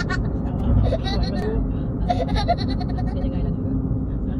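A person laughing hard in short, repeated high-pitched bursts, over the steady low rumble of a moving car heard from inside the cabin.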